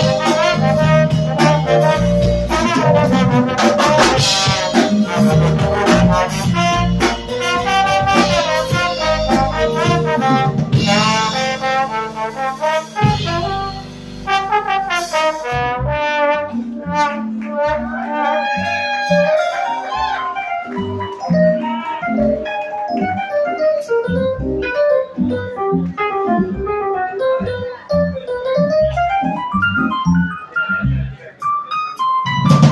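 Live trombone playing a melodic solo line over electric keyboard accompaniment from a Yamaha MODX. The backing thins out about halfway through, leaving a sparser texture under the trombone.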